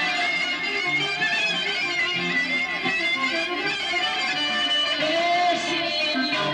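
Live Greek Sarakatsani folk dance music: clarinet leading the melody over keyboard (armonio) and electric guitar, with a steady bass rhythm. A sliding note comes near the end.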